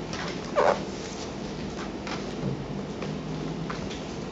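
Steady hiss of room noise with scattered faint clicks, and one brief, louder sound about half a second in that falls slightly in pitch.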